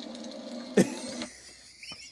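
A man's short, breathy burst of laughter about a second in, over low background.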